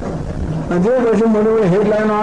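A man's voice, speaking in a drawn-out, rising-and-falling manner, starting about half a second in after a brief lower, quieter stretch.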